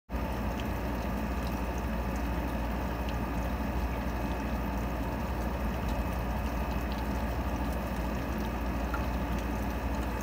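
Steady rain falling, an even hiss with faint scattered drips.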